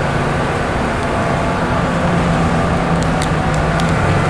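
Steady city street noise: a low, continuous mechanical hum under a traffic rumble.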